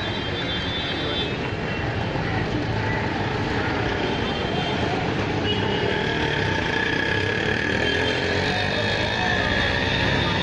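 Busy street ambience: indistinct crowd chatter over steady road traffic noise.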